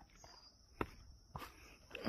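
Faint footsteps on a rocky dirt trail: a few soft steps, the first about a second in.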